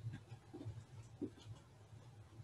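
Faint room tone: a steady low hum with a few soft ticks spread through the pause.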